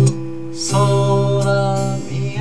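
Acoustic guitar chord ringing, then strummed again about half a second in, with a man singing one long held note over it from then on.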